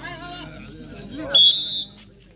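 Voices on the ground, then about a second and a half in a single loud, shrill whistle blast lasting about half a second, the referee's whistle of a kabaddi match.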